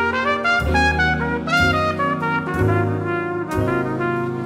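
Trumpet playing a jazz melody line of quick, changing notes, over double bass notes each held about a second.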